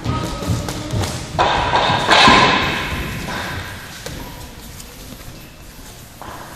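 Dull thuds of feet and strikes on a tatami-mat gym floor during kickboxing sparring. About a second and a half in, a louder sustained sound with a steady tone starts and fades away over a couple of seconds.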